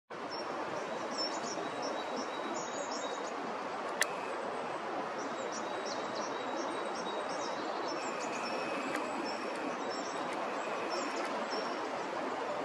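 Small birds chirping with short high calls throughout, over a steady background hiss of outdoor noise, with one sharp click about four seconds in.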